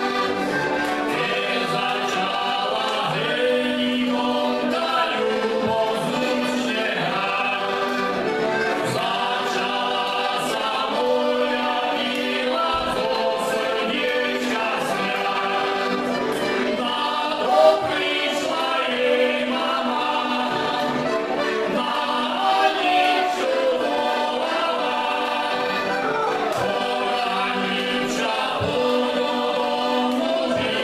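Three heligonkas, Slovak diatonic button accordions, playing a folk tune together, with men's voices singing along.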